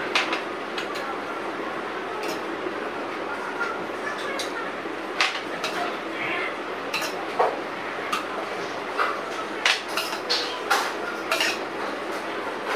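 Metal ladle clinking and scraping against a stainless steel pot and glass bowls as thick mung bean soup is ladled out: a string of irregular sharp clinks over a low steady hiss.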